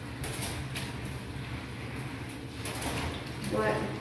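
Kitchen tap running onto a stainless steel sink drainboard while hands rinse and rub the ridged metal, with short irregular scrubbing swishes.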